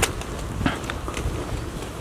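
Footsteps on brick paving while walking: a sharp step at the start and another about two-thirds of a second in, with a low rumble underneath.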